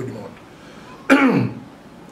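A man clears his throat once, about a second in, a short voiced sound that falls in pitch.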